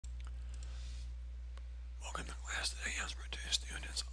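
A steady low electrical hum on the recording. Faint computer mouse clicks come in the first half as the whiteboard software's tools are switched. A man's voice starts speaking about halfway through.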